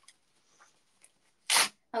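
A single short, sharp burst of breath, about a second and a half in.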